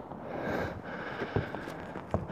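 Soft rustling with a few light knocks from someone moving about on an RV roof with a handheld camera, and breathing.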